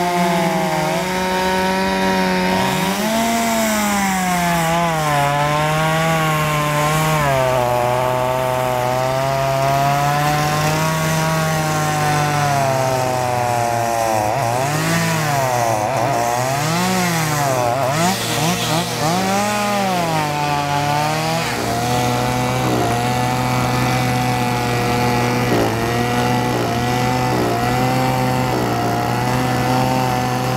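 A chainsaw used for cutting the ice runs continuously. Its engine pitch rises and falls repeatedly through the middle, then holds steady over the last third.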